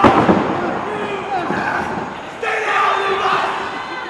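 Small crowd of spectators shouting and yelling during a pin attempt in a wrestling match, opening with a sharp smack. A single drawn-out yell starts a little over two seconds in.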